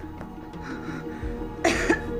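Soft background music with sustained tones, and a woman's short cough near the end.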